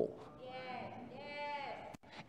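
Two faint, drawn-out vocal responses from the congregation, each rising and then falling in pitch.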